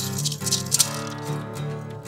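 Two acoustic guitars playing a blues tune while a hand-held maraca shakes over them, the shaking loudest in the first second and fading by about a second and a half.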